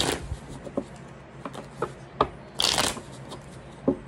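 Tarot deck being shuffled by hand. There is a quick fluttering riffle at the start and a longer one a little before three seconds in, with light taps and clicks of cards between.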